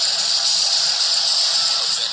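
A steady, loud hiss, strongest in the upper-middle range, with faint music beneath it.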